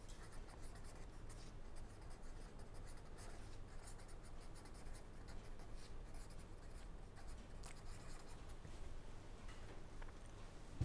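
Pen writing on paper: faint, irregular scratching strokes as a line of text is written out by hand, over a faint steady low hum.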